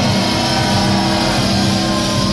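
Live band music played loud through a stage sound system: low notes held steady after the vocal line ends at the start.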